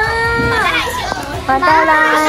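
Several young women's voices calling out together, holding long drawn-out words that slide down in pitch at the end.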